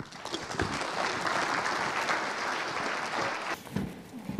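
Audience applauding, which dies away about three and a half seconds in.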